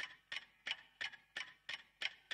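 Quiet, evenly spaced ticking at about three clicks a second, opening a pop-rock song before the band enters.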